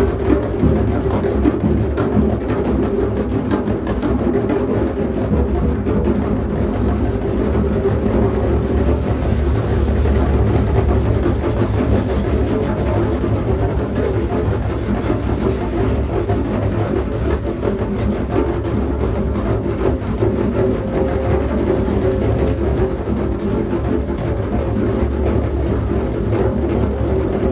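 Drumming music: deep drums played continuously under a low, steady drone.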